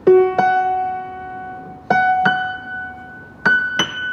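1984 Yamaha C3 grand piano with notes played in octaves: six notes struck in three pairs, each note left to ring and fade, the pairs climbing higher. The octaves ring clean and steady, showing the piano is in tune.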